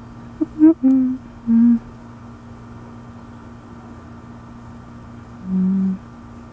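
A person humming short notes with closed lips: three quick notes in the first two seconds, then one longer, lower note near the end. A steady low hum sits underneath throughout.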